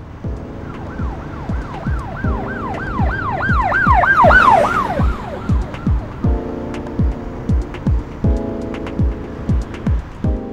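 An emergency-vehicle siren in a fast yelp, about three rising-and-falling wails a second, that swells to its loudest about four seconds in and fades out by about six seconds. Under it runs music with a steady beat and held chords that change every couple of seconds.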